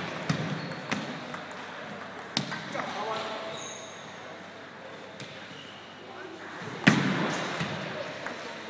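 Table tennis ball clicking sharply off the bats and table during a rally, several quick clicks in the first couple of seconds, with one louder knock near the end that echoes in a large gym hall.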